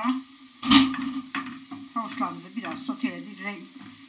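Grated carrots frying faintly in oil in a pan, with one sharp knock a little under a second in; low talking runs through.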